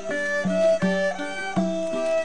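A traditional Thai string ensemble playing live: plucked sueng lutes pick out a quick run of notes while a bowed saw fiddle holds longer notes.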